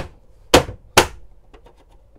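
Plastic front cover of a Progressive Dynamics PD4135 RV power center being pressed and snapped shut by hand: three sharp knocks about half a second apart, then a few faint clicks.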